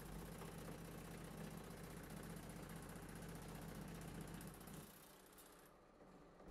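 Pullmax metal-shaping machine running faintly, its ram working rapidly and steadily with a low motor hum as homemade shrinking dies shrink a sheet-metal flange; the sound dies away about five seconds in.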